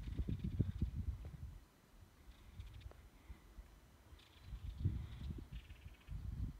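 Wind buffeting a phone's microphone: two spells of irregular low rumble, one at the start and one from near the end, with a quieter lull between.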